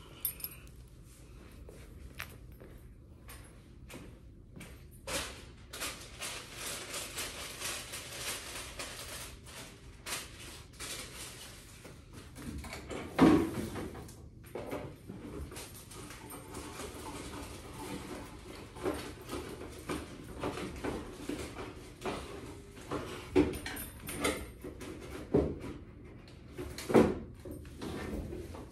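Someone handling things in a metal filing cabinet drawer: scattered knocks, clicks and rustling, with a sharp loud knock about 13 seconds in and another near the end.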